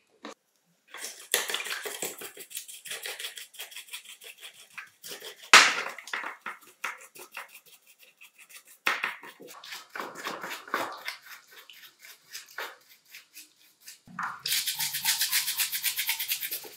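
Bristle brushes scrubbing plastic and metal sander parts in soapy water in a plastic tray: uneven strokes, with one loud sharp sound about five and a half seconds in, then fast, steady scrubbing from about fourteen seconds.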